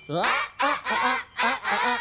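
A group of children and adults singing a string of short open-mouthed "ah" sounds, about five of them, each sliding up and back down in pitch, with no backing music under them.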